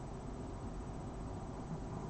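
Steady faint room tone: an even background hiss with no distinct sounds.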